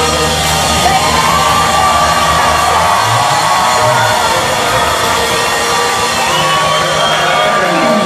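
Live ska band with horns and a female lead singer; the bass thins out about three seconds in while she sings long sliding notes, and the audience cheers and whoops.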